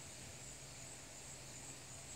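Faint steady background hiss with a low hum underneath; no distinct sound events.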